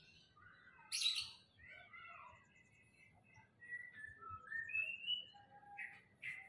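Small birds chirping and whistling in a run of short calls and gliding whistles, with a loud sharp call about a second in.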